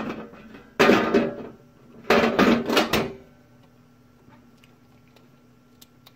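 A man coughing: one cough about a second in, then a short run of several coughs between two and three seconds in. After that only a faint steady hum remains.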